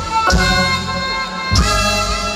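Live band music through a PA system: sustained chords punctuated by full-band hits, one about a third of a second in and another about one and a half seconds in.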